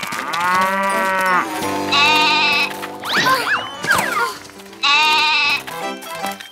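Cartoon goat kid bleating twice with a wavering cry, after a longer call that rises and falls at the start, over light background music with sliding, whistle-like sound effects between the bleats.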